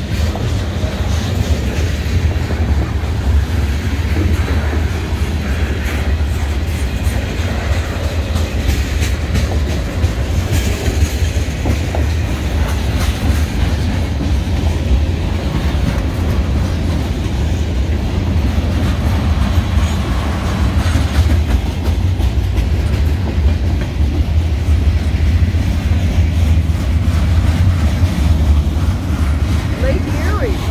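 Freight train cars rolling steadily past: a deep continuous rumble with the clickety-clack of steel wheels over the rail joints.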